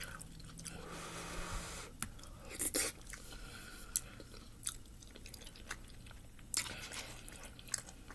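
A person chewing a soft noodle-and-ground-meat dish close to the microphone, with scattered short wet mouth clicks and smacks about once a second.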